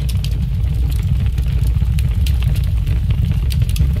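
Fire sound effect: a loud, steady low rumble with scattered sharp crackles.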